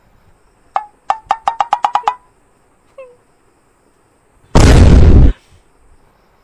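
A quick run of about a dozen short clicks, each with a slight pitched ring, lasting just over a second. A lone small click follows, and near the end a brief, very loud rushing burst of noise lasts under a second.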